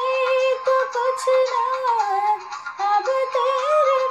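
Song music: a female voice sings a wordless, ornamented melodic line, holding notes and gliding and turning between them.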